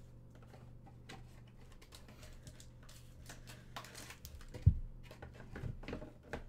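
Cardboard trading-card hobby box being handled and opened by hand: scattered light taps, clicks and scrapes of cardboard, with one sharp thump about three-quarters of the way through.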